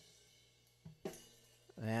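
Multitrack drum kit recording playing back quietly: a few sparse drum and cymbal hits, with a tambourine track being slowly faded up into the mix.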